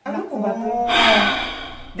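A voice giving a wordless exclamation with a loud, breathy gasp about a second in, trailing off.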